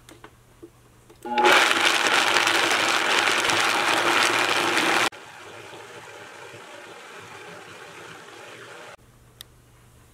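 Vitamix high-powered blender starting up about a second in and running loudly as it grinds roasted peanuts and water into a paste. About five seconds in the sound drops suddenly to a quieter steady run, which stops shortly before the end.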